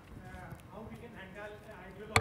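Faint, distant speech from a man talking away from the microphone in a large hall.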